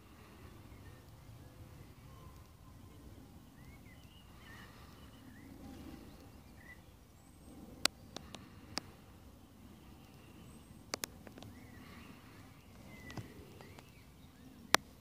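Faint outdoor ambience with small birds chirping now and then, and a few sharp clicks: a cluster about eight seconds in and a pair about eleven seconds in.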